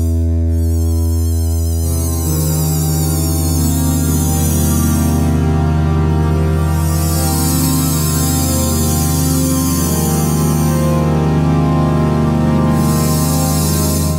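Novation MiniNova synthesizer playing an atmospheric pad: sustained chords over a steady low note, the chord changing about two seconds in. A bright, shimmering high layer swells up twice.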